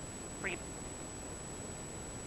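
A single short vocal sound from a woman, rising in pitch, about half a second in, over a steady hiss and a faint, steady high-pitched tone.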